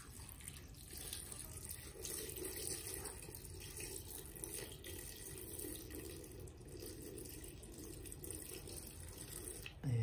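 Water poured in a steady stream from a jug into a metal pressure cooker, splashing over the sardines and vegetables inside. The pour gets a little fuller about two seconds in.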